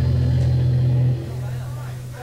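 Loud, steady low drone from a rock band's amplified instruments, held and then dropping off sharply about a second in and fading away.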